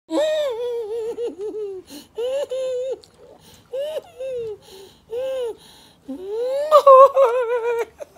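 A woman's high-pitched, wavering wails and laughter, about five long drawn-out cries with the loudest near the end, in reaction to the burning heat of very spicy noodles.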